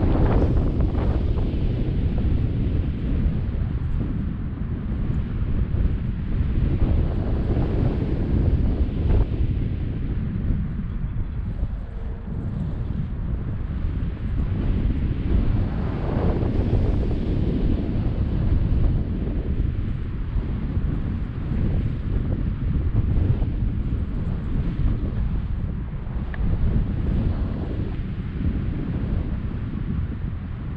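Wind from a paraglider's airspeed buffeting a GoPro action camera's microphone: loud, steady rushing noise, heaviest in the low end, swelling and easing in gusts.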